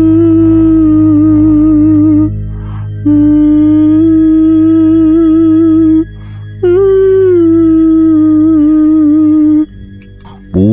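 A woman's wordless, mournful singing in three long wavering phrases, the last starting with a drop in pitch, over a low steady drone.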